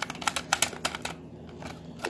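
Plastic clicks and rattles from a toy dispenser's push-buttons and compartments as it is pressed and jiggled, with a quick run of sharp clicks in the first second and then a few scattered ones. The mechanism sounds jammed.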